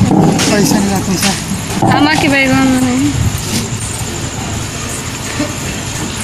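Mixed voices, with a rising then held chanted or sung note about two seconds in and a few sharp clicks, quieter in the second half.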